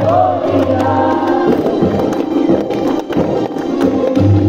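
Hindu devotional song: voices singing in chorus over a steady low drone, with percussion strokes throughout.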